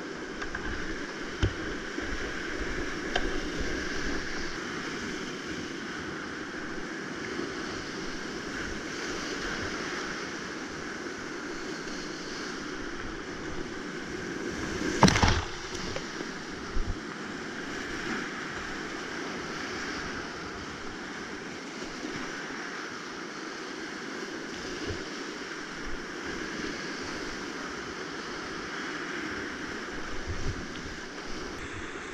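Whitewater rapids running steadily around a kayak at high flow, heard close up from a camera on the boater. About halfway through there is one loud splash as water breaks over the boat and the lens.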